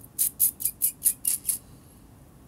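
A quick, even run of about seven short, hissy taps or scratches, a little under five a second, stopping after about a second and a half.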